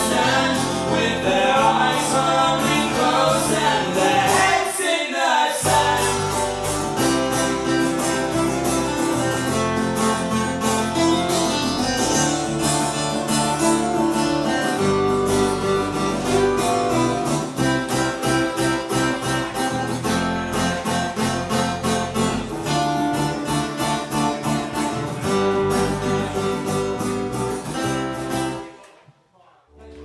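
Live acoustic band playing: strummed acoustic guitars and electric bass, with singing in the first few seconds. The music stops abruptly near the end.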